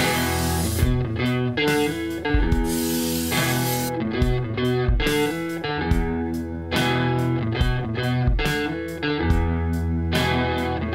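Background music: an electric guitar track with changing notes over a steady bass line, played on the Harley Benton ST-style kit guitar.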